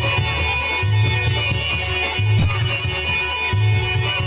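Loud amplified band music with sustained melody notes over a deep bass note that pulses about every second and a half.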